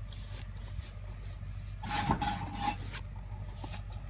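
Metal hardware on a center-pivot irrigation tower being worked by hand: a brief scraping rub with a short squeak about two seconds in, over a steady low hum.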